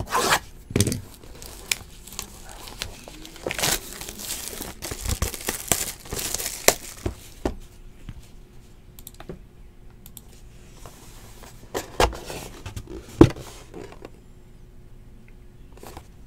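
Plastic shrink wrap being torn and crinkled off a sealed trading-card hobby box: a run of rips and crackles for the first several seconds, then quieter handling of the cardboard box with a couple of sharp clicks.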